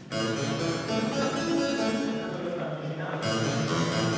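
Harpsichord playing chords. One is struck just after the start, more notes follow about a second in, and a fresh chord comes a little after three seconds, each ringing and fading between strikes.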